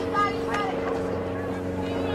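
A steady, low mechanical drone with a fixed pitch, with faint distant voices over it in the first second.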